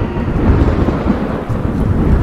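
Thunderstorm sound effect: loud, continuous thunder rumbling deep and low over the steady hiss of rain.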